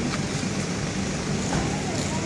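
Street noise dominated by a car engine running close by, with faint talking in the background.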